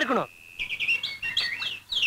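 Small birds chirping, a busy run of short, high, quickly repeated chirps that starts about half a second in.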